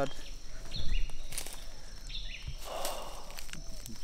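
Footsteps and rustling through jungle undergrowth, with a few sharp snaps and a short brushing noise about three seconds in, over a steady high insect drone.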